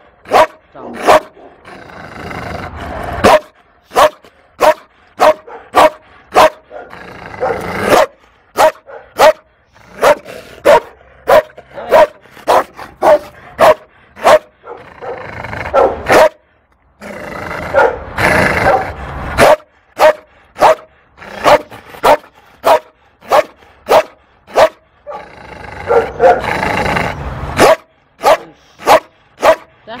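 Belgian Malinois barking over and over, short sharp barks about one to two a second, broken by several longer, rougher growling stretches. The dog is described as fearful.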